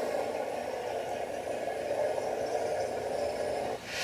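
A neopixel lightsaber's sound board playing its steady idle hum through the hilt speaker, stopping just before the end.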